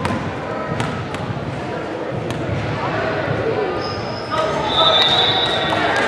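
Basketball bouncing a few times on a hardwood gym floor as a player dribbles at the free-throw line, under echoing voices that grow louder about four seconds in.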